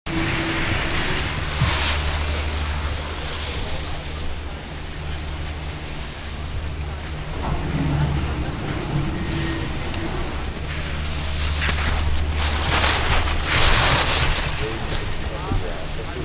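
Wind rumbling on the microphone, with swells of hiss from a ski racer's edges carving and scraping on the snow, loudest a couple of seconds before the end.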